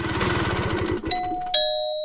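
An auto-rickshaw engine runs for about a second. Then an electronic doorbell rings a two-note ding-dong, the second note lower.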